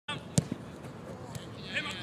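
A football being kicked: one sharp thud, the loudest sound, with a lighter knock a moment after. Distant players' shouts come near the end.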